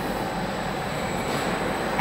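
Chain-driven flange roll forming machine running, its roller stations turning the steel strip through, an even mechanical running noise with a thin steady high tone over it.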